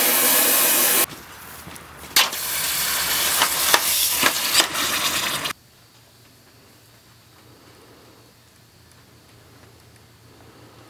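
A loud steady rushing hiss cuts off abruptly about a second in. From about two seconds in, hot steel hinge strap blanks are quenched in a bucket of water, hissing and sizzling with crackles for about three seconds until it stops suddenly, leaving faint room tone.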